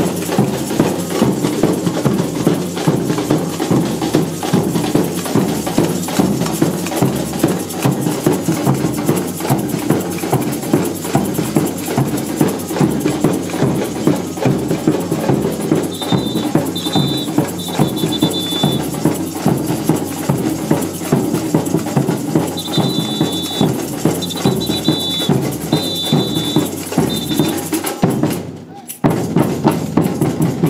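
Samba bateria playing a steady batucada on large silver surdo bass drums, snare drums and jingle shakers. Twice in the second half, a samba whistle (apito) sounds a run of short blasts over the drumming, the director's cue to the drummers.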